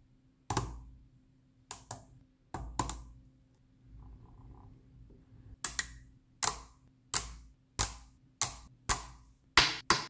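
Small neodymium rod magnets snapping onto steel balls: a series of sharp metallic clicks, a few scattered in the first three seconds, then a steady run of about one or two a second from around halfway on.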